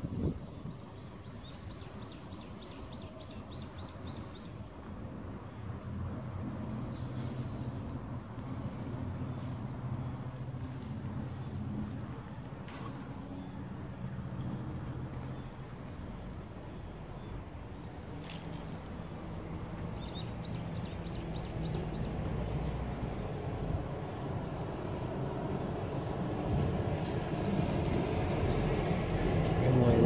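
Low, steady rumble of road traffic engines, growing louder toward the end. A brief, rapid high trill comes twice, near the start and about two-thirds of the way through.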